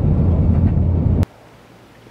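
Airliner cabin noise during climb-out: a loud, steady low rumble of the jet engines and airflow. It cuts off abruptly just over a second in, leaving faint room tone.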